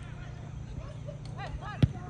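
A football kicked once near the end, a single sharp thud, over a steady low hum and short repeated calls on the pitch.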